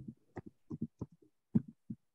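A run of soft, irregular thumps, about eight in two seconds, like tapping or handling noise close to a microphone.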